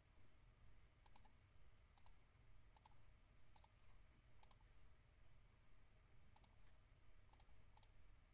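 Faint computer mouse clicks, about one a second, many of them quick double ticks, over a low steady hum.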